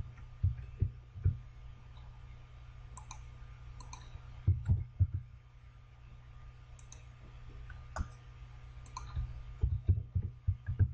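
Computer keyboard keys and mouse buttons clicking in short clusters as short words are typed into a program and confirmed, over a steady low hum.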